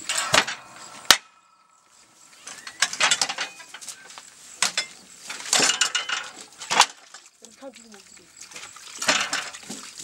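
Steel hand-lever earth-brick press being worked: a sharp ringing metallic clang about a second in, then irregular clanks, rattles and scraping knocks of the mechanism and soil being loaded into the mould.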